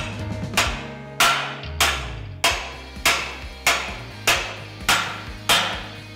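A hammer striking a steel wedge about ten times at a steady pace, a little under two blows a second, each blow sharp with a short metallic ring. The wedge is being driven under a dog tacked to heavy plate to force the high side of a misaligned joint down level.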